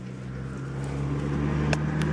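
A low, steady droning hum that grows louder, with a single sharp click about three-quarters of the way through.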